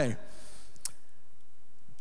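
A quiet pause in the room, low steady hiss after a spoken word, with one short, sharp click a little under a second in.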